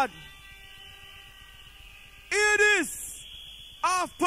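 An MC's voice through a rave sound system. A faint steady hum holds for the first two seconds, then comes a loud shouted call a little past halfway, and more short calls begin near the end.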